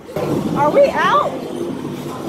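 People shrieking and crying out in fright over a loud, rough noise that comes in suddenly just after the start, in a dark horror walk-through attraction.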